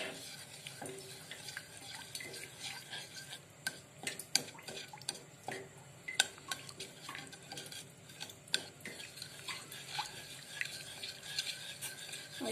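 Wooden spatula stirring a thin coconut-milk mixture in a small stainless steel saucepan on the stove, clicking and scraping irregularly against the pan's sides and bottom while the mixture is heated and stirred to blend.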